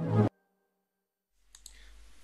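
The tail of an electronic synthesizer intro jingle, cutting off abruptly, then silence. Near the end two short clicks come in with faint room hum.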